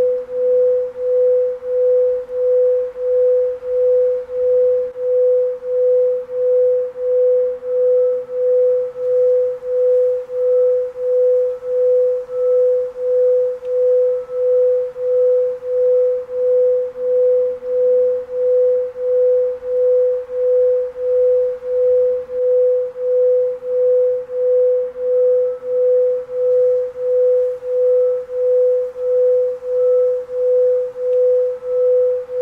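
Binaural beat in the delta range: a single steady mid-pitched pure tone that swells and fades evenly about one and a half times a second.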